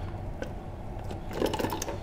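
Loose metal bolts, nuts and washers clinking and rattling in a plastic box as hands lift out an International Shore Connection flange, with a few soft clicks and then a quick cluster of clicks about a second and a half in.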